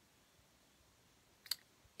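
Near silence: faint room tone, broken by one short, sharp click about one and a half seconds in.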